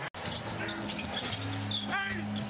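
A basketball being dribbled on a hardwood court, with arena ambience and a low steady hum that comes in about halfway. The sound breaks off for an instant right at the start.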